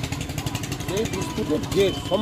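A man speaking, with a vehicle engine idling in the background.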